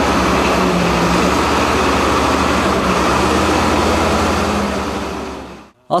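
XCMG LW300F wheel loader's diesel engine running steadily with a constant low hum. It fades out near the end.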